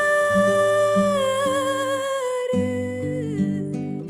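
A woman's voice holds one long sung note in a flamenco- and Arabic-influenced song over plucked acoustic guitar accompaniment. The note dips slightly in pitch about a second in and fades out near the end while the guitar carries on.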